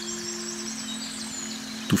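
Soft background music with long held low notes, one of which changes about half a second in, under a thin, faint high warbling line.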